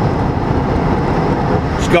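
Steady road and engine noise heard inside the cabin of a moving car, a low, even rumble.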